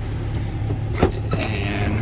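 A plastic glove box panel being handled at the dash of a 2015 Chevy Silverado, with one sharp click about a second in, over a steady low hum.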